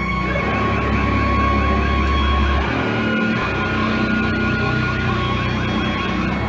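Live band playing loud and distorted, with steady guitar feedback tones ringing over a heavy low droning chord. The low drone drops out briefly about halfway through.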